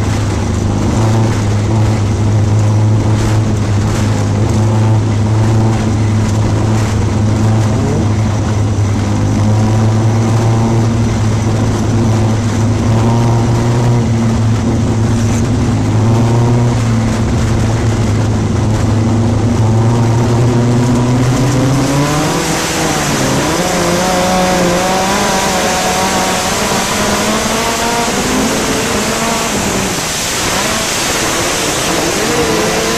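Midget race car's Gaerte 166 ci inline engine heard from the cockpit, holding a steady note for about twenty seconds. Then the pitch dips, climbs and wavers under changing throttle, and a loud rush of wind noise comes up with it.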